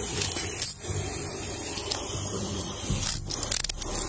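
Body-worn camera scraping and rubbing against clothing and skin as an officer grips a person's arm to handcuff them. There is a sharp jolt a little over half a second in and a quick run of clicks near the end.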